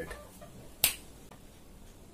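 A single sharp snap, like fingers being snapped, just under a second in, over faint room noise.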